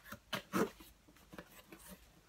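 Cardboard shipping box being opened by hand: the flaps and cardboard rub and scrape in a few short, faint bursts.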